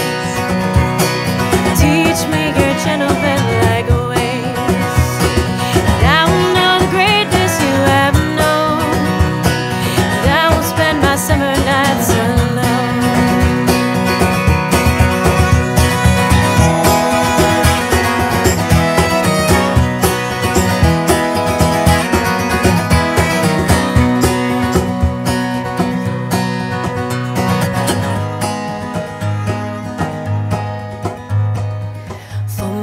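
Instrumental break of an acoustic country-folk song: a violin plays a lead line with sliding notes over strummed acoustic guitar and a light hand-percussion beat.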